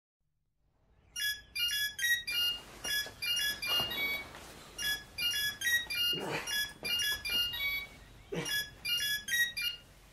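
A mobile phone ringtone playing a repeated melody of short, high electronic notes, starting about a second in and ringing for about eight seconds. A few lower, softer sounds come in between the notes.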